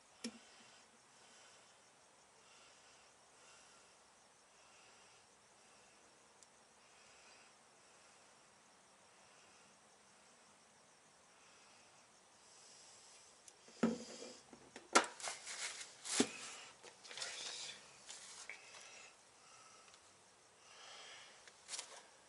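Faint hiss at first, then about two thirds of the way in a cluster of sharp clicks and knocks as a steel vernier caliper and a forged conrod are handled and set down on the bench. Near the end, paper rustles.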